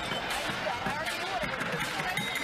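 Chatter of many voices in a busy street crowd, with repeated low thumps beneath it.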